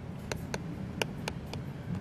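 Apple Pencil nib tapping and clicking on the glass screen of a 9.7-inch iPad during handwriting: about half a dozen light, irregular ticks.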